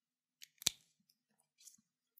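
Writing being done: light taps and a faint scratch, with one sharp tap a little over half a second in.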